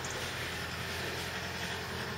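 Steady outdoor background noise: an even hiss with a faint low hum and no distinct events.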